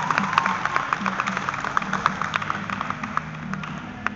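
Audience clapping, a crowd's applause that dies away over the first three seconds, over background music with a steady repeating low line.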